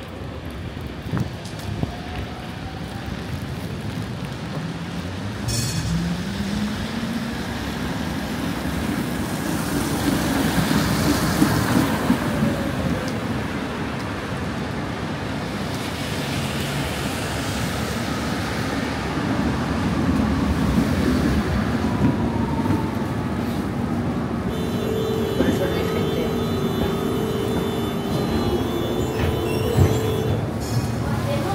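A Tatra T3 tram moving along a wet city street; its traction motors give a whine that rises in pitch as it gets under way. Tyres hiss on the wet road throughout, and near the end a steady hum with held tones takes over.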